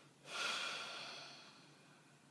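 A woman's long, heavy exhale through the nose, a sigh, starting suddenly about a quarter second in and fading away over a little more than a second.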